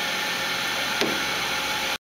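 Steady hiss and hum of a Hansvedt DS-2 benchtop wire EDM running its X–Y home cycle, with a single click about a second in. The sound cuts off suddenly at the very end.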